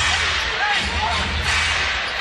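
Basketball arena crowd noise: a steady hubbub from the crowd with a few scattered voices.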